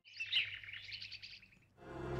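Birds chirping: a rapid run of high, quick chirps lasting about a second and a half. A flute tune begins just before the end.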